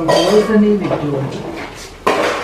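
Dishes and cutlery clinking, with a person's voice over them during the first second or so.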